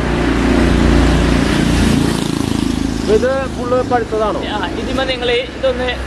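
A motor vehicle's engine runs close by, loudest in the first two seconds and then easing off under a man's voice.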